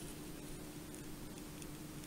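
Quiet background: a faint steady hiss with a thin low hum, and no distinct event.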